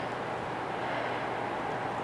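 Steady background hiss and hum of the room, with no distinct events.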